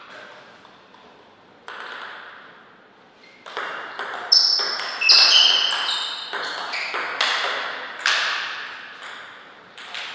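Table tennis rally: a ball being struck by paddles and bouncing on the table. It makes sharp clicks, some with a high ring, about two a second from a few seconds in until the point ends near the end.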